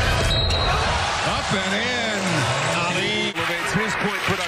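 Arena game sound from a basketball broadcast: crowd noise and voices, with a basketball bouncing on the hardwood court. About three seconds in, the sound cuts abruptly to another game.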